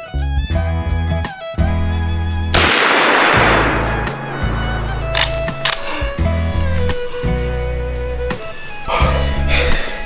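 Background music with bowed strings over a steady low beat; about two and a half seconds in, a single loud gunshot cuts through, its echo dying away over a second or so.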